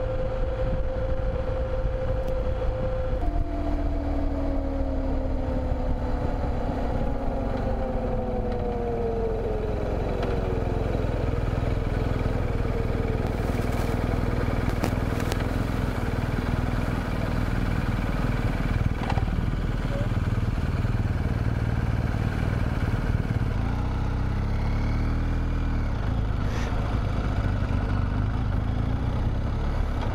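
BMW R1200 GS Adventure's flat-twin engine at road speed, the bike cruising on a steady note, then a downshift about three seconds in and the engine note falling as the bike slows. It then runs low and slow, with a brief rev past the middle.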